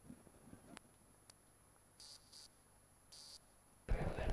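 Quiet background with a few faint clicks and three short, high-pitched hissing bursts in the second half, then a sudden loud thump just before the end as louder sound starts.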